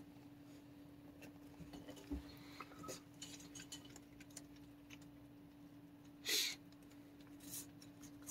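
A raccoon handling food in a stainless-steel feeder bowl: faint scattered clicks and clinks, with one louder, brief clink about six seconds in, over a steady low hum.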